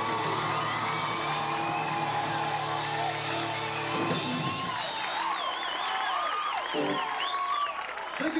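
A rock band's last held chord on electric guitar and keyboards rings for about four seconds and stops, and the crowd then cheers, whoops and whistles.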